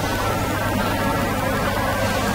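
Steady low hum with a hiss over it, even and unchanging.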